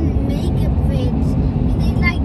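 Steady low rumble of road and engine noise inside a moving truck's cabin at highway speed, with faint voices over it.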